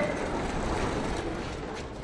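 Room tone of a large film soundstage: a steady hiss and low rumble with no voices, slowly getting a little quieter.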